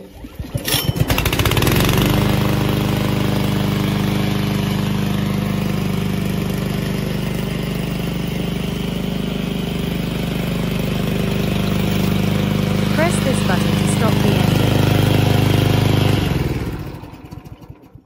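Loncin 224cc single-cylinder four-stroke gasoline engine pull-started with its recoil starter. It catches about a second in, runs steadily, then winds down and stops near the end as it is switched off with the stop button.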